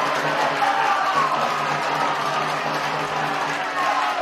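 A crowd in the stands cheering and singing after a goal: an even roar with steady held notes in it.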